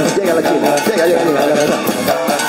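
Loud live band music playing for dancing, with a voice singing over it.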